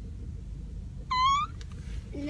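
Steady low road rumble inside a moving car, with one short high-pitched squeal, rising slightly, just over a second in.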